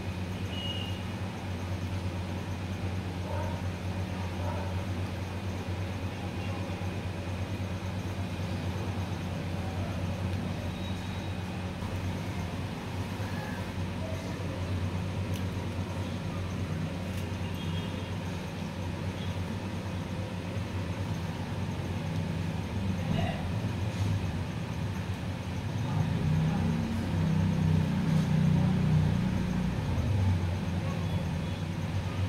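A steady low background hum, like a motor or distant traffic, that grows louder for the last few seconds.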